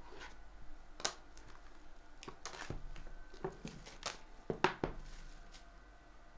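Clear plastic shrink wrap being torn and pulled off a sealed trading card box: a run of sharp crinkles and snaps, about a dozen of them, unevenly spaced.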